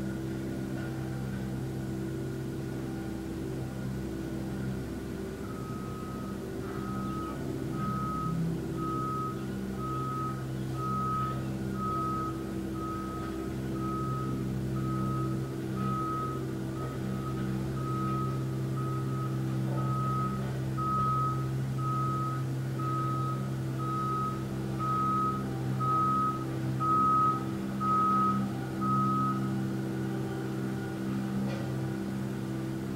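A truck's reversing alarm beeping about once a second, a single high tone, starting about five seconds in and stopping just before the end. Under it runs a steady low engine drone that swells a few times near the end.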